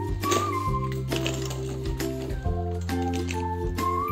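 Background music with held bass notes, chords, a melody line and a light, regular percussive beat.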